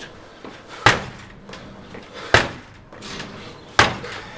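Three hard kicks against a door held by a strike plate lock, each a loud bang with a brief rattle, about a second and a half apart. The door takes the blows and stays shut.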